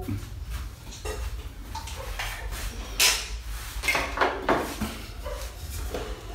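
Scattered knocks and clatter of hand work on fittings in a bare room, over a low steady rumble. The loudest knock comes about three seconds in, with a few more shortly after.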